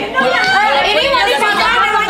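Several women's voices talking over one another in lively, overlapping chatter.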